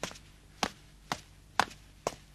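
Footsteps walking away across a hard floor: four sharp, evenly paced clicks about half a second apart.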